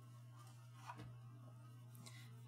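Near silence: room tone with a low steady hum, and two faint soft ticks about a second in as card stock is handled.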